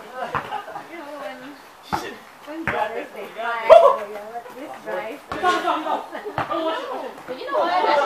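People talking over a basketball game, with about six separate sharp thuds of a basketball bouncing on the court spread through it.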